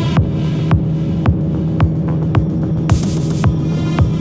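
Background electronic music: a kick drum beating just under twice a second over a sustained low bass drone, with a short hissing sweep about three seconds in.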